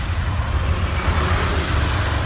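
Steady road noise from inside a moving car: low engine and tyre rumble with the hiss of traffic passing close alongside.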